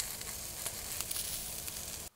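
A steady sizzling hiss with a few faint crackles, as of something hot smoking.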